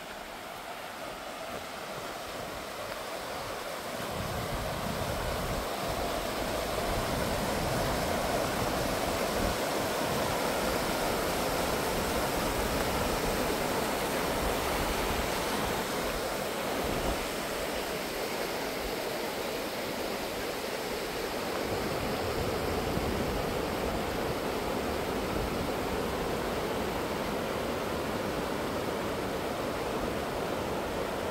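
River water rushing over shallow rapids in a steady roar, growing louder over the first several seconds and then holding steady.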